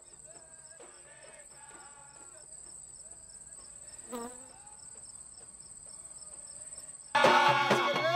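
Insects, likely crickets, trilling steadily at a high pitch, with faint voices in the background. About seven seconds in, loud music with singing and drums cuts in suddenly.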